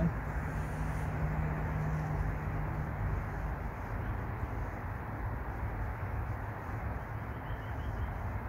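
Steady outdoor background rumble, with a low steady hum through the first two or three seconds.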